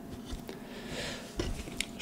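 A few soft clicks and a brief faint rustle from hands handling an Arduino board with an LCD shield.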